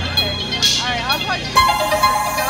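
Audience chatter near the stage, then a live band starts playing about one and a half seconds in: a sudden struck onset followed by a steady held chord from the electric guitar and keyboard.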